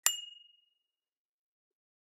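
A single bright ding sound effect: a sharp strike with a high ringing tone that dies away within about half a second.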